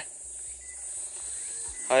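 Steady high-pitched drone of summer insects with no break, and a voice calling out right at the end.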